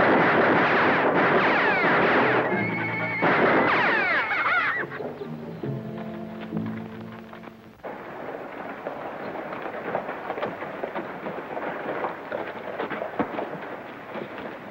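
Horses whinnying and hooves pounding under a dramatic orchestral music cue. The music settles on held chords and stops sharply about eight seconds in. After that, horses' hooves clop more quietly.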